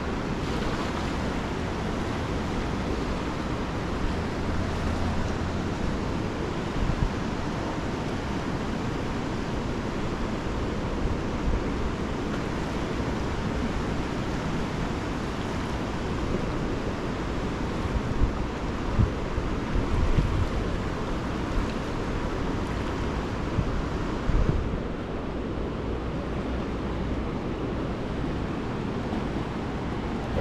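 Steady rush of a wide river running high and fast over rapids, with wind buffeting the microphone in gusts, mostly in the second half.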